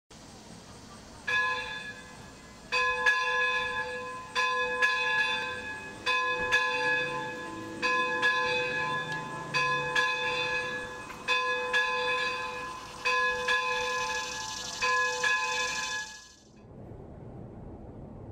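Church bells ringing in an uneven sequence of strikes, about one to two a second, each strike left to ring on. A hiss swells near the end, and the bells stop suddenly about sixteen seconds in.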